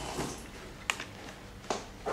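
Handling noise of an electric guitar being turned over in the hands: two sharp clicks about a second apart over a steady low electrical hum.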